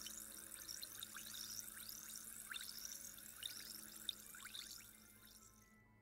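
Faint fizzing of a glass of carbonated water: many small bubble pops and ticks, over a quiet, steady musical drone. Both fade out near the end.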